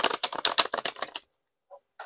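A deck of tarot cards being riffle-shuffled: a fast run of card clicks lasting about a second and a half, followed by a short rustle at the very end as the cards come back together.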